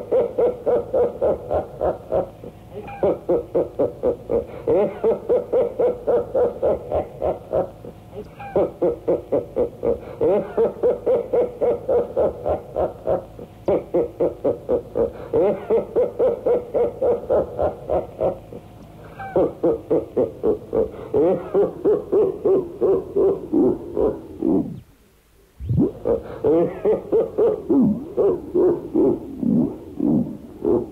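Rapid pulsing pitched tone, about four pulses a second with a wobbling pitch, in phrases of about five seconds broken by short pauses and one brief silence near the end. It is part of a lo-fi 1990s experimental tape recording.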